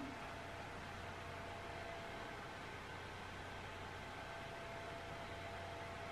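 Quiet, steady room tone: a low even hiss with a faint constant hum, and no distinct events.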